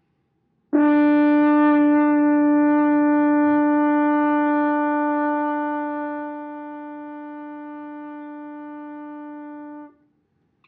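French horn holding one long, steady note, the written A on the second space of the staff, which sounds as concert D. It starts cleanly under a second in, grows softer about two thirds of the way through, and stops just before the end.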